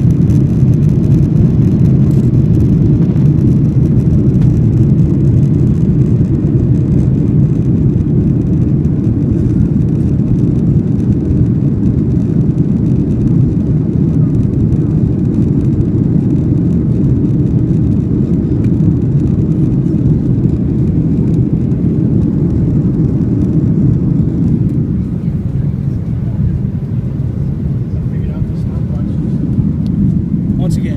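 Steady low rumble of a Boeing 737-800's CFM56 turbofan engines and airflow heard inside the passenger cabin during the climb after takeoff, easing slightly about 25 seconds in.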